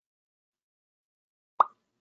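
Near silence with one short, sharp pop near the end.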